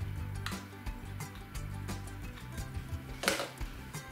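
Light instrumental background music, with a brief scraping noise about three seconds in, from a spoon spreading sauce in a ceramic baking dish.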